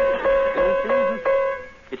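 Piano key struck about five times in quick succession on the same note during tuning; the note sounds too low, flat of where it should be.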